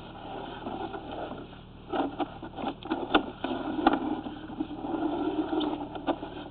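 Drain inspection camera rod being handled and pulled back through the sewer line, over a steady low hum. A cluster of scrapes and knocks comes about two to four seconds in.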